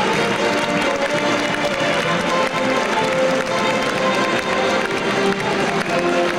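A Mummers string band playing, with many instruments holding and changing notes together in a steady stream of music.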